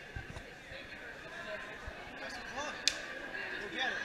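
Background chatter of many people in a large gym hall, with one sharp click or smack about three quarters of the way in.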